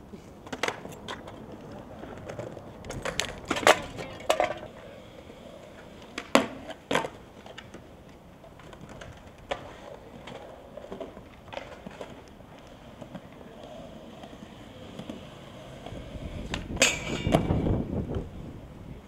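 Skateboards on concrete: wheels rolling, broken by sharp clacks of boards popping and landing several times, with a louder, longer clatter near the end.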